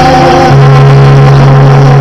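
Yamaha electronic keyboard holding sustained chords, with a low bass note under them, changing chord about half a second in; very loud.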